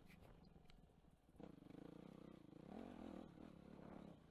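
Yamaha YZ250F four-stroke single-cylinder dirt bike engine heard faintly while being ridden, easing off and then picking up revs again about a second and a half in.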